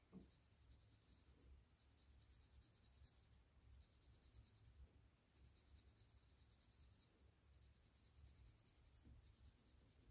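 Faint scratching of a coloured pencil shading back and forth on paper, very quiet, with a low steady hum beneath.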